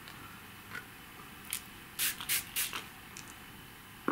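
Small plastic pump spray bottle spritzing water onto card in several quick short hissy bursts, about four in a row around the middle. It is wetting dry Brusho ink powder to dilute a strong colour.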